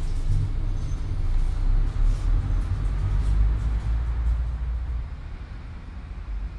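A low, steady rumble that fades down near the end.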